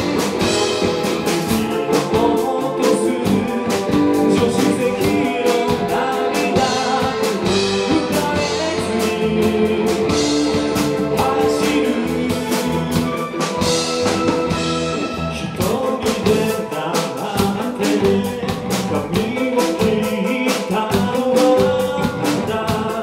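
Live pop-rock band playing: drum kit, electric bass and electric guitar under a male lead vocal.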